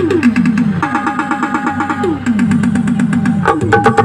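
Electronic keyboard music: quick falling pitch swoops repeated many times a second in the low register, over held chord tones and sharp percussive clicks. A louder chord comes in near the end.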